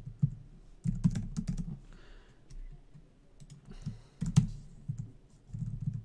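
Computer keyboard typing in short bursts of rapid keystrokes, with pauses of a second or two between the bursts.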